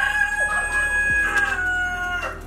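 Rooster crowing: one long held call that sags in pitch and fades out near the end.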